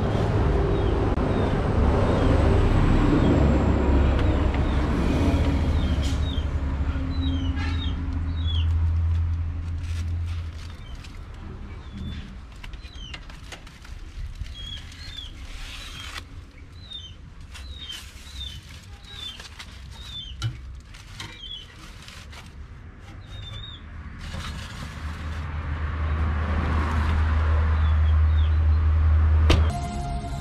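A loud low rumble fills the first ten seconds, fades, and swells again near the end. In between, birds chirp repeatedly, with scattered clicks and rattles of metal tongs and foil-wrapped fish on the metal rack of a charcoal-filled oven.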